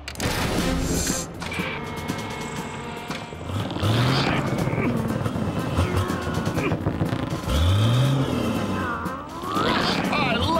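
Cartoon soundtrack: background music mixed with sound effects. Level jumps suddenly right at the start, and low sliding-pitch effects rise and fall twice as the stretchy band is pulled.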